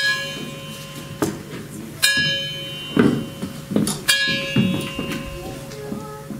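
A bell struck three times, about two seconds apart, each stroke ringing on and fading, with softer low thuds in between.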